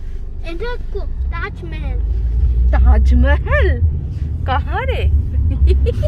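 Steady low rumble of a car driving, heard from inside the vehicle, with high-pitched voices talking over it.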